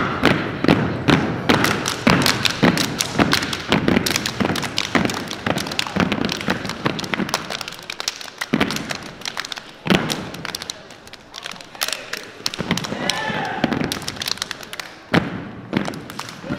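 Step team stepping: a fast run of stomps on a hardwood gym floor with claps and body slaps, thinning out about ten seconds in before a few more hits near the end.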